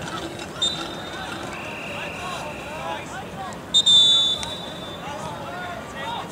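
Referee's whistle stopping play. A short blast and then a longer, loud blast come a little before the middle. A fainter high steady whistle tone sounds earlier. Spectators chat throughout.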